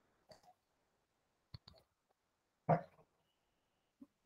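A few faint, sharp clicks, with one louder knock about two-thirds of the way in.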